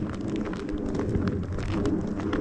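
Footsteps crunching on snow: many short, irregular crunches from people walking on a snowy path.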